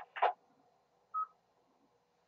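A single short electronic beep from a radio receiver about a second in, after a station stops transmitting: a repeater courtesy tone marking the channel clear for the next check-in.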